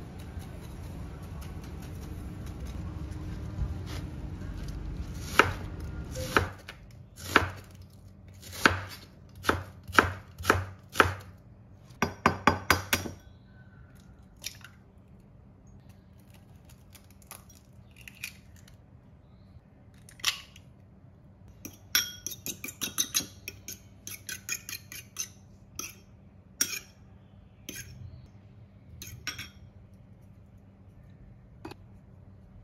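Knife chopping on a wooden cutting board, sharp knocks about once a second and then a quick flurry, followed later by an egg tapped on a ceramic bowl and beaten with a metal fork, quick clusters of clinks.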